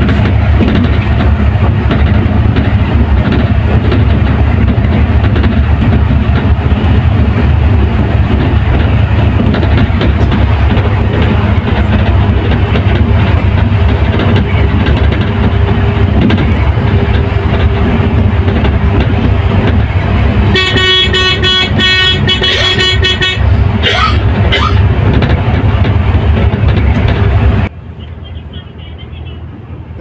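Volvo coach engine and road noise heard from the driver's cab at highway speed, loud and steady. About two-thirds of the way through, a horn sounds for about three seconds with a rapid pulsing, followed by a short gliding tone. Near the end the noise drops suddenly to a much quieter cabin hum.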